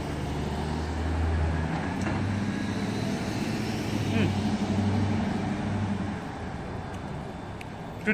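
Cars passing on a street, a low engine and tyre rumble that swells and then fades about six seconds in.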